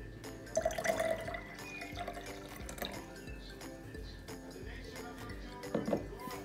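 Liquid poured from a glass jar into a drinking glass partly filled with red cabbage water, over steady background music.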